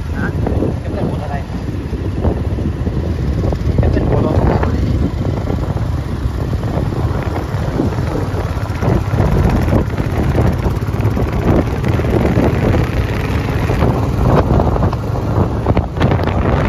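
Royal Enfield motorcycle running at cruising speed, its engine rumble mixed with heavy wind buffeting on the microphone.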